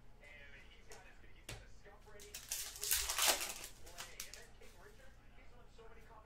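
Trading cards being handled and flipped through by hand: faint scattered clicks, and a louder rustling slide of cards across each other about two seconds in that lasts about a second.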